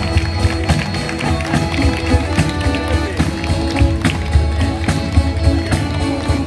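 Live folk band with accordion and acoustic guitars playing dance music to a quick, steady beat.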